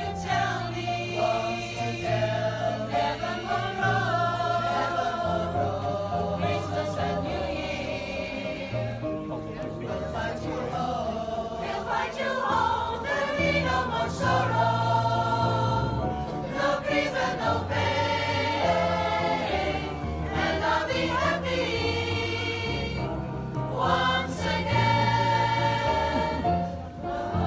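A choir singing a slow Christmas ballad over a musical backing with a bass line that moves every couple of seconds.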